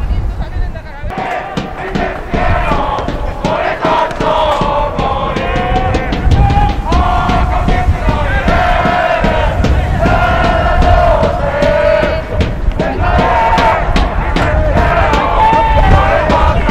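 A group of supporters chanting and singing together in long held calls, with a low wind rumble on the microphone.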